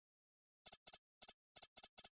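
Electronic computer-interface sound effect: six short, high-pitched double blips in quick succession, starting just over half a second in. They accompany on-screen text being typed out.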